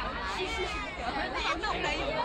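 Crowd chatter: many people talking over each other, with no single voice standing out.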